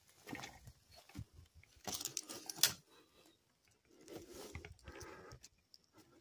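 Irregular rustling and crunching of footsteps and branches brushing past as a person pushes through undergrowth, with the loudest crackle a couple of seconds in.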